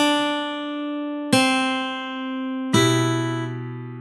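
Guitar playing a slow single-note melody at half speed: three plucked notes about a second and a half apart, each ringing on and fading before the next.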